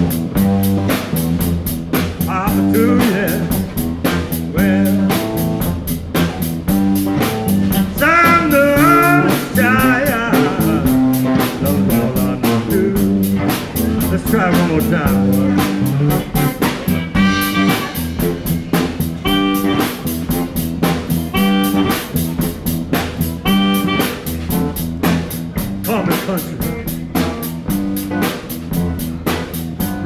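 Live blues band playing a song, with guitar over a steady beat.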